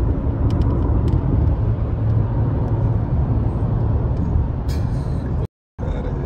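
Steady low rumble of road and engine noise inside a car's cabin while driving, broken by a moment of total silence near the end.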